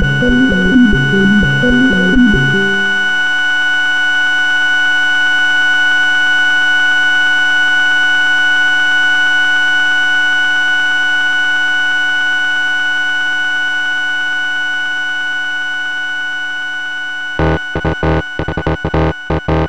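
Minimal experimental electronic music: a fast choppy low synthesizer pattern for about the first three seconds gives way to a long sustained synthesizer drone chord that slowly fades. Sharp stuttering pulses return just before the end.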